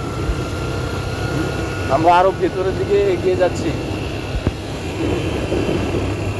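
Motorcycle engine running at a steady pace with wind and road noise from the moving bike, under a faint steady whine.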